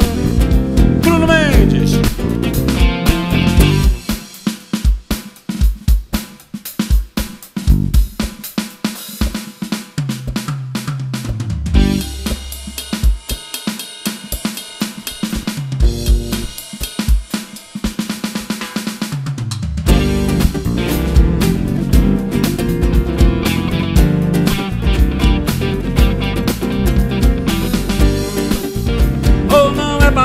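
Drum kit solo on snare, bass drum, hi-hat and rims. The full band plays for the first few seconds, drops out, and comes back in about twenty seconds in.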